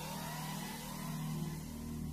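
Intro logo sound effect: several tones sweeping upward in pitch and levelling off, over a steady low drone.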